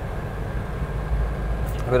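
Lada VAZ-2107's four-cylinder engine running steadily on the move, heard inside the cabin as a low drone with road noise.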